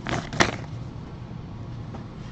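A taped paper envelope being pulled open by hand: a brief rustle of paper at the start and one sharp crackle about half a second in, then faint paper handling.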